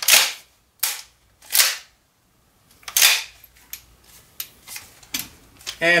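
APS M870 gas-powered, shell-ejecting airsoft pump shotgun fired and its pump action cycled: four sharp bangs and clacks in the first three seconds, then a few lighter clicks.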